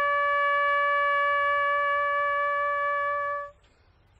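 Solo trumpet holding one long, slow note that breaks off about three and a half seconds in.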